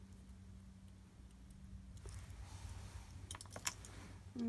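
A few faint clicks of glass beads and metal findings knocking together, bunched about three and a half seconds in, over a soft rustle of cloth as a beaded dangle is handled and set down.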